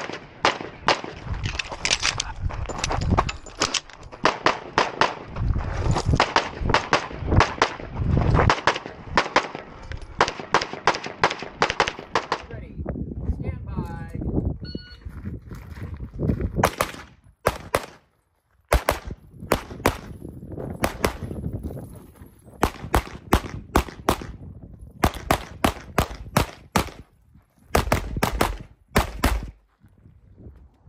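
Pistol gunfire in fast strings of shots, several a second, through the first twelve seconds or so. After a short lull, more strings of pistol shots follow.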